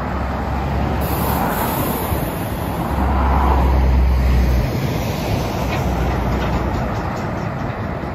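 Highway traffic passing close by: tyre and engine noise of a truck and cars going past. A low rumble swells to its loudest about three to four and a half seconds in.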